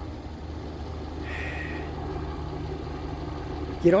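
Car engine idling: a steady low hum, with a short high tone a little over a second in.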